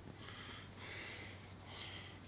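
A person breathing out hard through the nose close to the microphone: one hissing exhale about a second in.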